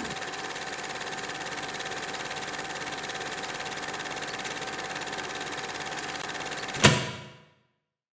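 Logo-intro sound effect: a steady, rapidly pulsing buzz with a faint held tone, ended by a single sharp hit about seven seconds in that fades out quickly.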